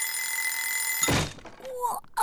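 Twin-bell alarm clock ringing steadily, cut off about a second in by a thump. A short voice sound follows near the end.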